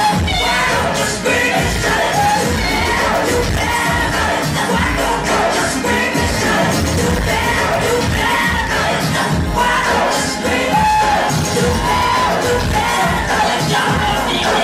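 Loud nightclub music with sung vocals, and a crowd shouting and cheering over it.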